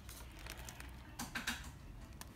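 Faint clicks and taps of a metal spoon against a glass bowl as chili salsa is scooped out, with a couple of sharper taps just over a second in.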